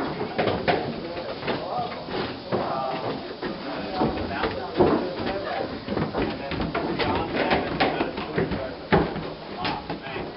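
Indistinct talk of several people, mixed with footsteps and short knocks on wooden boards.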